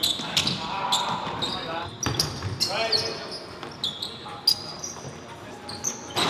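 Indoor basketball game: sneakers squeaking on the hardwood court and the ball bouncing in scattered sharp thuds, with players calling out indistinctly a couple of times.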